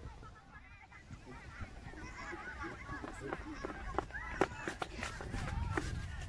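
A group of children calling out and shouting over one another, with a few sharp taps in the second half.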